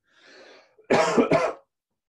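A person coughing twice in quick succession: two short coughs about half a second apart.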